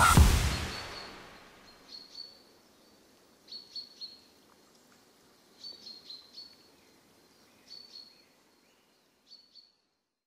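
The beat's last hit rings out and fades over the first second. Then come faint, short bird chirps in little clusters every two seconds or so, high and thin.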